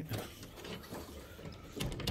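Soft footsteps on carpet and rustling, knocking handling noise from a handheld phone as the person walks, a few faint clicks, with a duller thud near the end.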